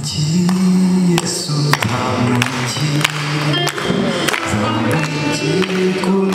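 A church congregation singing a hymn together in long, held notes, with a few sharp claps or knocks.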